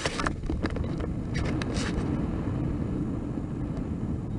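Airflow rushing over the onboard camera microphone of a radio-controlled plane just after it is hand-launched, heard as a steady low rush. A few brief scrapes and rustles come from the launch handling near the start and again in the second second.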